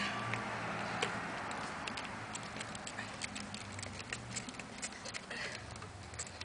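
Fuzion three-wheeled scooter's wheels rolling and clicking on gritty asphalt, with many small irregular clicks and clacks as the scooter is tipped and turned; the rolling hiss fades over the first couple of seconds.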